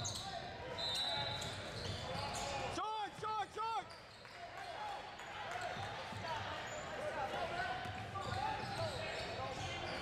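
Basketball game on a hardwood court: a ball being dribbled, sneakers squeaking in short chirps, and spectators' voices. About three seconds in, three short, loud, pitched sounds come in quick succession.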